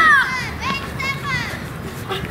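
Children's voices shouting on a football pitch: one loud, high drawn-out call at the start, then a few shorter shouts.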